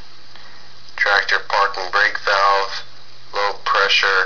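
Speech: a voice reading aloud in two phrases, starting about a second in, with a faint steady low hum underneath.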